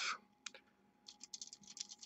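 Faint ticks and crackles of a paintbrush working acrylic paint on a crinkled aluminium-foil palette: a single tick about half a second in, then a quick run of small clicks in the second half.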